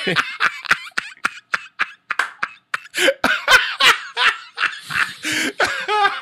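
Two men laughing: quick breathy snickering pulses at first, then louder, fuller laughter from about three seconds in.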